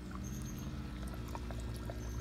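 Small pond filter running: a steady low hum with water trickling and splashing, and a few faint clicks.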